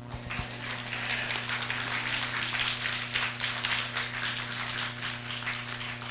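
Applause from a small congregation, starting just after the song ends and thinning toward the end, over a steady low electrical hum.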